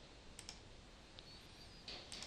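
Near silence: faint room hiss with a few faint, brief clicks.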